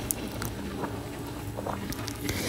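Small motorcycle engine running faintly and steadily while riding, with light road noise.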